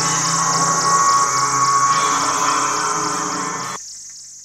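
The closing seconds of a hi-tech psytrance track at 170 BPM: dense electronic layers over a pulsing high hiss. Near the end the music cuts out suddenly, leaving only a fading high wash.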